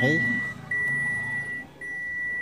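Mitsubishi Mirage G4 seatbelt reminder chime beeping: one steady high tone repeated about once a second, each beep nearly a second long with short gaps between. It sounds with the buckle unfastened, showing that the DIY-wired buckle switch now sets off the chime.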